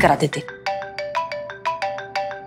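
Mobile phone ringtone: a quick, repeating melody of short marimba-like notes, about six a second, starting about half a second in.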